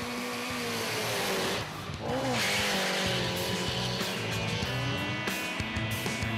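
A drag car doing a burnout: spinning tyres make a dense, rushing squeal over the engine held at high revs, growing louder after a brief dip about two seconds in. Background music plays underneath.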